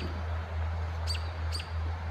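An animal chirping: two short, high chirps about half a second apart, over a steady low hum.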